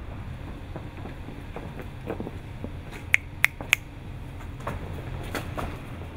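A steady low rumble with scattered faint clicks, and three sharp clicks in quick succession a little past the middle.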